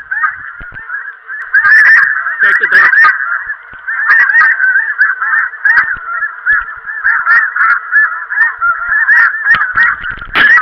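A flock of geese honking, many short calls overlapping in a continuous chorus, with a few sharp knocks mixed in.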